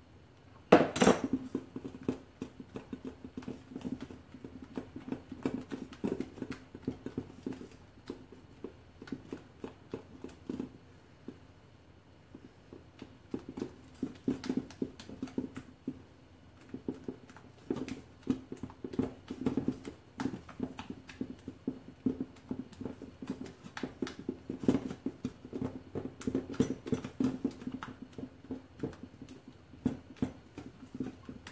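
A spatula stirring and scraping thick cake batter in a stainless steel mixing bowl: a steady run of quick knocks and scrapes against the metal, with one louder knock about a second in.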